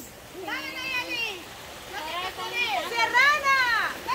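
High-pitched voices calling out in drawn-out, rising and falling cries, over the steady rush of a small creek running past.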